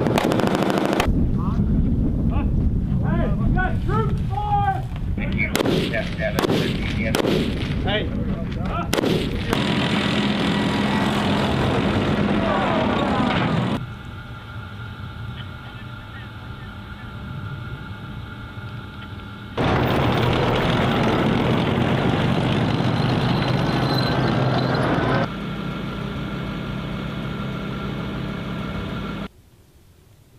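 Rifle gunfire in sharp, rapid shots from soldiers firing from a trench, in the first second and again at about 5 to 9 s, followed by long stretches of loud dense noise. In between, a quieter stretch holds the steady tones of a Bradley Fighting Vehicle's running engine.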